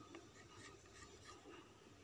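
Near silence with faint light ticks and rubbing: fingers handling small glass craft stones and shifting the sheet of paper they are laid on.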